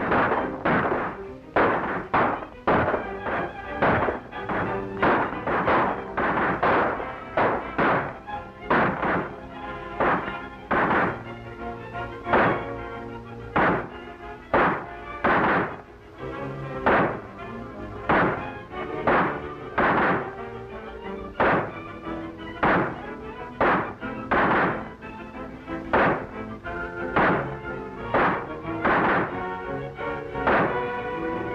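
Old film-soundtrack gunfire in a shootout: sharp shots cracking irregularly, about one a second, over a dramatic orchestral score.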